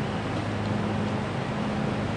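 A steady machine drone: a low hum under a constant rush of noise.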